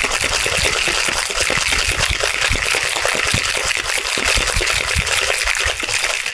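Ice and liquid rattling and sloshing inside a metal cocktail shaker tin, shaken hard and steadily with rapid knocks of ice against the metal.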